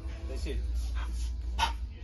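A dog gives one short, sharp bark or yip about a second and a half in.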